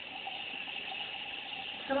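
A steady rushing hiss with a faint hum underneath.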